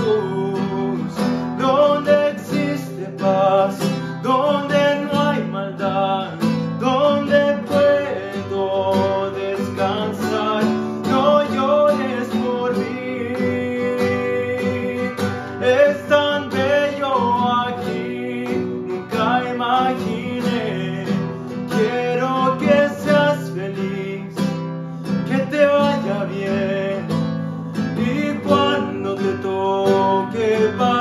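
Classical (nylon-string) acoustic guitar strummed as accompaniment, with a man singing over it in places.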